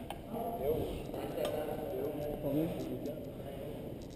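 Faint voices of people talking at a distance across a large gymnasium.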